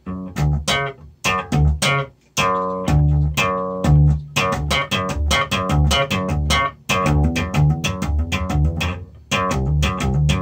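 Electric bass guitar played slap style in a repeating pop–slap–hammer pattern in a six-eight feel: sharp, bright pops on a higher string alternate with thumb slaps and hammered-on notes on a lower string. The riff breaks off briefly a few times.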